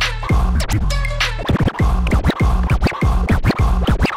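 Turntable scratching over a hip-hop style beat with a heavy bass line: a rapid series of short record scratches, each a quick sweep up or down in pitch.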